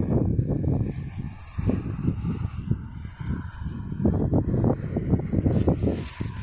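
Outdoor wind rumbling on a phone microphone, with irregular rustling and dull knocks of handling as the phone is carried and lowered toward the grass.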